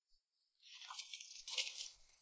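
A sheet of paper rustling and crinkling as a letter is taken out and unfolded, starting about half a second in.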